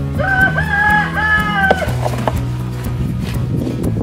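Background music with a rooster crowing once near the start, a single held call of about a second and a half in a few stepped parts.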